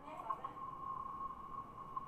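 A steady electronic tone held at one pitch, with faint voice traces near the start.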